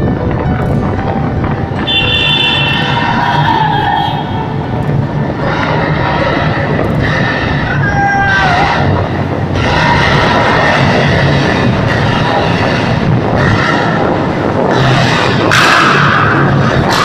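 Steady road and engine noise of a moving vehicle on the highway, with a few brief pitched sounds over it.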